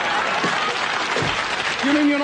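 Audience laughing and applauding, a dense, steady wash of clapping and laughter.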